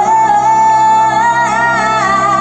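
Live pop band playing loudly, with one long, high note held over the backing.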